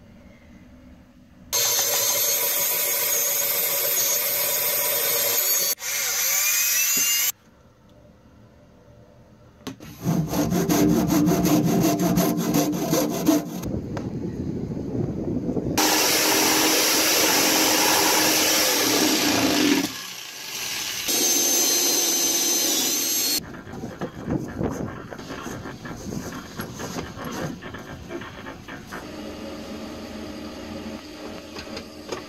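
Power tools at work in several separate bursts of a few seconds each, with short pauses between. In one a jigsaw cuts into the top of a plastic water tank. The last few seconds are quieter and uneven.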